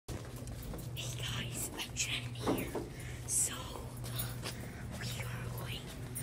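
A person whispering in short breathy bursts over a steady low hum.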